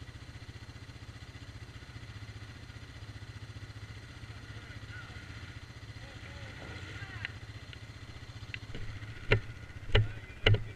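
Off-road vehicle engine idling with a steady low pulse. A few faint voices come in the middle. About nine seconds in, a run of sharp knocks starts, about two a second, louder than the engine.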